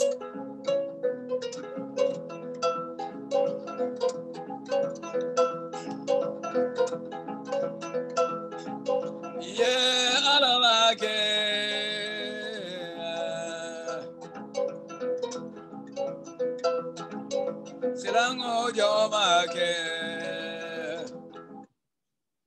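A 21-string kora and a wooden balafon playing together, a steady run of plucked and struck notes, with a voice singing over them about ten seconds in and again near the end. The music cuts off suddenly just before the end.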